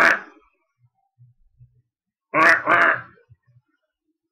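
A man's voice making two short mock animal calls in quick succession about two and a half seconds in, after a brief vocal sound at the very start.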